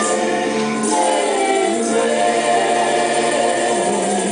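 Church worship team singing a gospel worship song in harmony, holding long notes over a live band of keyboard, guitars, drums and tambourine, moving to a new chord about halfway through.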